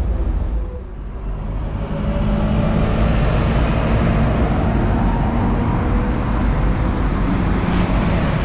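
Buses running close by: a loud, steady engine rumble that dips briefly and then grows louder about two seconds in.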